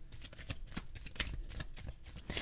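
A deck of tarot cards being shuffled by hand: a quick, irregular run of light card clicks.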